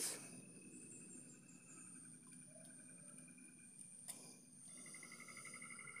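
Near silence with faint, steady insect chirring in the background and a single light click about four seconds in.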